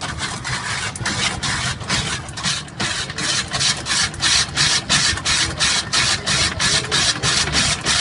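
A hand-cranked ice-shaving machine rasps as its blade scrapes a block of ice, one scrape for each turn of the crank. The scrapes come about three to four a second and grow louder through the run.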